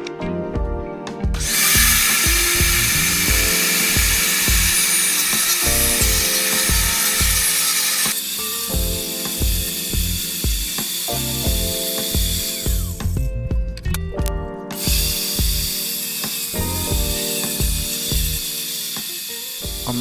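Portable table saw running and cutting 3/4-inch Baltic birch plywood, a loud steady hiss. It stops for a moment about thirteen seconds in, then starts again. Background music with a steady beat plays underneath.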